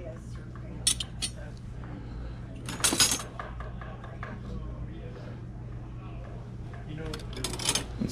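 Silver-plated spoons and forks clinking against each other as they are picked through in a box of loose flatware. There are a couple of light clinks, a louder cluster about three seconds in, and another run of clinks near the end.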